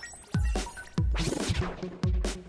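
Background electronic music with deep bass beats, with a rising and falling whooshing noise sweep about a second in.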